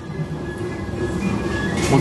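A train running on the tracks: a steady rumbling noise that grows louder, with a faint thin high whine over it.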